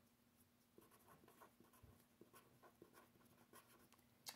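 Felt-tip pen writing letters on a sheet of paper: very faint, short scratching strokes.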